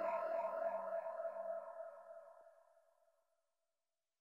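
The closing fade of a psytrance track: a sustained synthesizer chord pulsing about four times a second, dying away to silence about two and a half seconds in.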